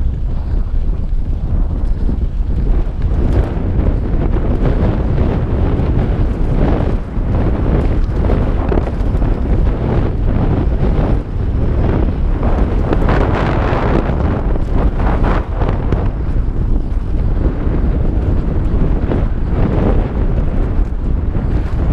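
Wind buffeting the microphone of a helmet-mounted GoPro as a mountain bike descends a loose dirt trail, with tyres crunching over the dirt and the bike rattling over bumps. The low rumble is steady, with frequent short knocks, thickest in the middle of the stretch.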